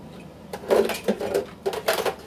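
Metal kitchen utensils clattering as a spatula is picked out: a quick run of sharp clicks and knocks starting about half a second in.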